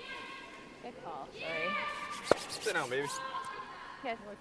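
Curling players calling out in long, drawn-out shouts. A single sharp crack about two and a half seconds in is a granite curling stone striking another stone in the house, with a quick run of clicks around it.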